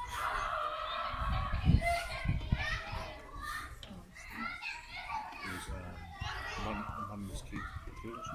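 Children's voices calling and chattering as they play. About two seconds in come two low thumps, the loudest sounds here.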